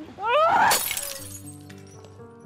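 A person cries out, the cry rising in pitch, followed at once by a loud crash lasting about half a second; a music score with held notes then comes in.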